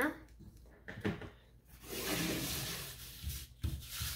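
Cardstock sliding and rubbing across a craft mat as a card is handled, with a couple of soft bumps on the table near the end.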